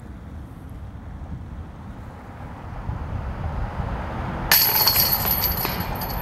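Chains of a disc golf basket jangling as a putt strikes them and drops into the basket, starting suddenly about four and a half seconds in and rattling for just over a second, over a steady low outdoor rumble.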